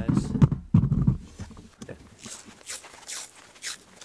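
Low rumbling handling noise as the camera and sword are moved, then about four short rasps of cloth hockey tape being pulled off the roll.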